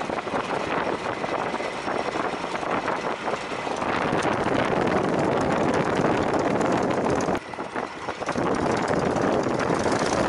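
Stampe SV4B biplane's engine and propeller running, heard from the open cockpit with wind noise over the microphone. It grows louder about four seconds in and drops away briefly near the three-quarter mark before picking up again.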